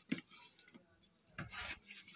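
Faint scratch of tailor's chalk drawn across cloth along a ruler, one short stroke about one and a half seconds in.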